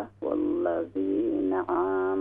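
Quran recitation in melodic Tajweed style: one voice holds long, slowly gliding notes with brief breaths between phrases. The narrow sound suggests it comes over a telephone line.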